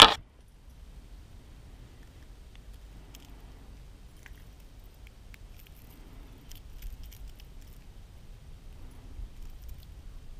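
Faint, scattered metallic clinks and small clicks of a broken-back Rapala lure's hooks being worked free from a small largemouth bass's mouth, a stubborn hook that is hard to get out. One sharp click at the very start, over a low steady rumble.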